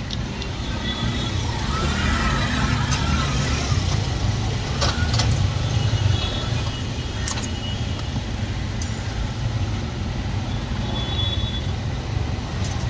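Steady low rumble of passing street traffic, with a few sharp clicks of a knife striking the cutting surface as fruit is sliced.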